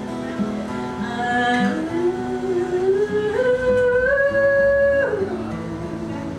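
Acoustic guitar strummed and picked, with one long wordless sung note that slides upward about two seconds in, is held, and falls away at about five seconds.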